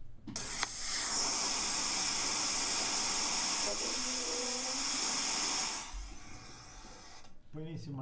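White noise playing from a phone speaker: a steady hiss for about five and a half seconds that cuts off suddenly. Partway through, faint wavering sounds ride on top of the hiss; the person who recorded it calls them a vibration picked up by the microphone that sounds like a voice.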